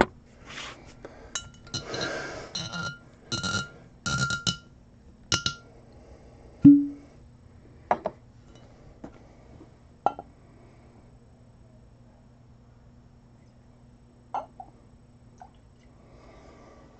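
Scotch being poured from a bottle into a glass tumbler: the glass clinks and rings several times with a short splash of pouring in the first five seconds. A duller knock comes about seven seconds in, then a few light taps before it goes quiet.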